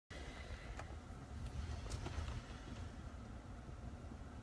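Low rumble inside a parked car's cabin, with a few faint clicks as the phone is handled.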